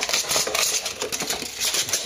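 Katana in its scabbard being pulled out of a cardboard shipping box and its foam holders: a busy run of small clicks, scrapes and rustles of cardboard and foam.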